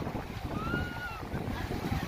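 Wind buffeting the microphone over the wash of small waves breaking in shallow surf. Near the middle a short, thin high-pitched tone rises and falls.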